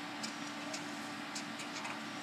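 Felt-tip marker strokes on paper, heard as a handful of short, irregular ticks as digits are written, over a steady low hum.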